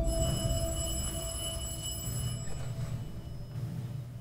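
Dark, brooding film trailer score: a low sustained drone that slowly fades, with a thin high ringing tone over the first two seconds or so.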